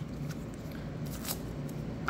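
Faint crinkling of an alcohol prep pad packet being torn open, with a few light handling clicks.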